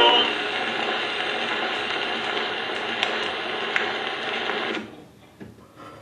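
Edison Diamond Disc phonograph running on after the last sung note: the stylus rides the record's blank grooves, giving a steady hiss of surface noise with scattered clicks. It cuts off sharply near the end as the reproducer is lifted, followed by a couple of faint knocks from handling.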